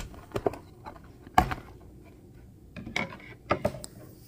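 Cardboard box end flap being pried and pulled open by hand: scattered clicks and scrapes of the cardboard, with a sharper knock about a second and a half in and a cluster of clicks near the end.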